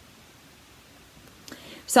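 A pause in a woman's speech: faint room tone, then a soft breath about one and a half seconds in, and her voice comes back right at the end.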